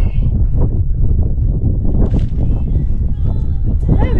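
Strong wind buffeting the camera's microphone on an exposed mountain ridge, a loud rough low rumble throughout.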